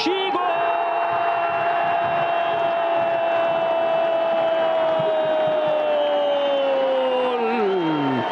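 A football commentator's long, drawn-out "gooool" call for a goal just scored, held on one note for about seven and a half seconds before the pitch drops away at the end. Stadium crowd cheering sits beneath it.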